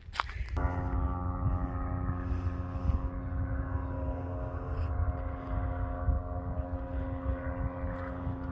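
Powered paraglider (paramotor) flying overhead: its engine and propeller give a steady, even drone. The drone starts abruptly about half a second in, with wind rumble on the microphone underneath.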